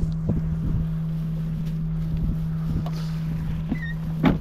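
Steady low engine-like hum, with wind noise on the microphone and a few soft knocks.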